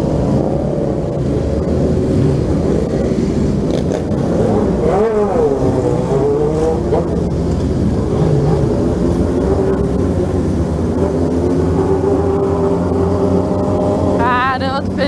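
Motorcycle engines running at low road speed in a large group ride, the Yamaha XJ6 inline-four under the rider loudest. The pitch rises and falls briefly about five seconds in.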